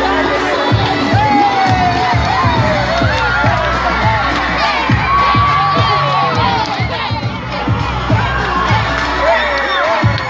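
A crowd cheering and shouting, many of the voices children's, with whoops and one long held high shout about five seconds in.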